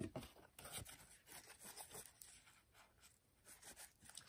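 Faint rustling and rubbing of a paper towel as a small knife part is wiped clean of Loctite residue, in short soft scuffs.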